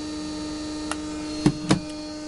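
Homemade pulse motor-generator (Hall-sensor and MOSFET-driven drive coil, 24-pole rotor) running steadily near 1500 RPM under a 3-watt load, giving an even electrical hum. A couple of short knocks come about one and a half seconds in.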